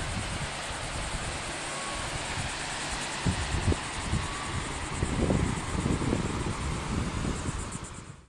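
Wind buffeting the microphone in irregular low rumbling gusts, stronger in the second half, over a steady hiss of ocean surf.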